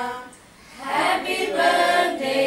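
A small group of adults and children singing a birthday song together, unaccompanied. There is a short break for breath about half a second in before the voices come back.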